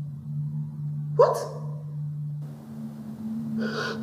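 A woman's short anguished cry about a second in, followed near the end by a sharp sobbing breath, over low sustained notes of background music.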